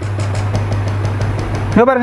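Steady low hum, with a quick run of faint light ticks in the first second; a man's voice starts near the end.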